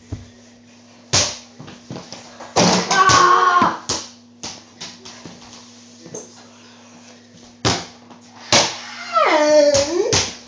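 Several sharp thumps from jumping, landing and dunking at an over-the-door mini basketball hoop, with two short vocal cries without words, the second falling in pitch near the end. A steady low hum runs underneath.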